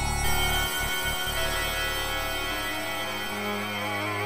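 Electronic music played on a virtual Casio CZ-style synthesizer, tuned to 12 notes out of 91-EDO: layered sustained tones over a deep bass drone that stutters off and on about a second in.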